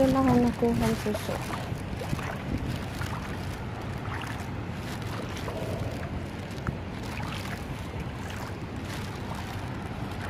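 Steady low rumble of wind buffeting a phone's microphone, with a few faint clicks, one standing out about seven seconds in.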